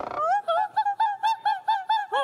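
A very high voice sings a fast run of short staccato notes, about five a second, each note swooping up and back down, as a vocal showpiece.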